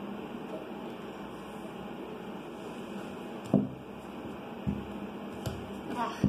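A few light knocks of a glue tube and hands on paper over a tabletop, the loudest about three and a half seconds in, over a steady room hum.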